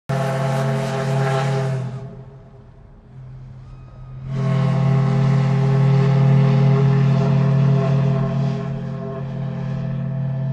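A deep steam whistle blowing, most likely from a riverboat: one blast of about two seconds, then after a short gap a long, steady blast on the same low pitch.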